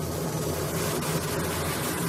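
White wine poured into a pot of hot sautéing vegetables, sizzling steadily as it hits the pan, over a steady low hum.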